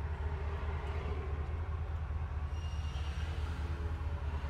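1962 Ford Galaxie 500's engine idling, a steady low rumble heard from inside the cabin.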